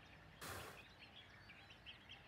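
Near silence with faint birds chirping in the background. A brief soft hiss comes about half a second in.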